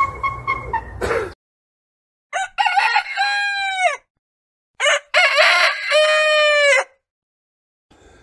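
A rooster crowing twice, each crow a long pitched call of about two seconds, the two about a second apart. Before them, a short stretch of outdoor background cuts off about a second in.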